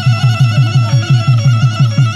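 Assamese folk dance music: a fast, even drum beat of about five strokes a second under a high, sustained melody line.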